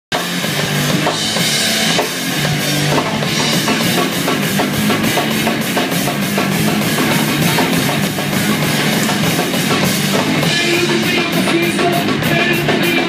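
Live rock band playing loudly: two electric guitars over a steady, driving beat on a drum kit, with no vocals yet.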